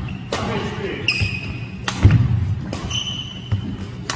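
Badminton rally: sharp racket strikes on the shuttlecock about once a second, with short high squeaks of court shoes on the wooden floor and footfalls.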